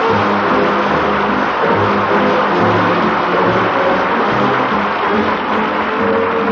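A radio studio orchestra plays a brief play-on, with sustained notes over a bass line that changes about twice a second, heard on a band-limited 1940s broadcast recording.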